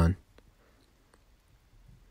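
Near silence after a man's voice trails off, broken by two faint clicks less than a second apart.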